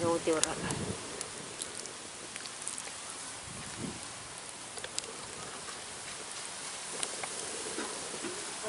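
Hot oil sizzling steadily in an aluminium pot around whole tomatoes, with a few faint pops and ticks scattered through it.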